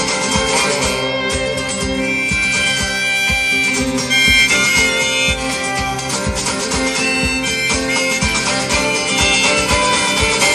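Live band playing an instrumental break between verses, with sustained melody lines over guitar and a steady drum beat.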